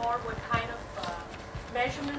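Faint, distant speech from a person talking away from the microphone, with a few soft knocks.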